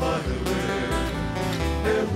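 Live Hawaiian string band music: acoustic guitars strummed and plucked over an upright bass, with a man's voice singing near the end.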